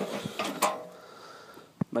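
Lid of a Char-Broil grill being handled: a few light clicks and knocks, the sharpest about half a second in.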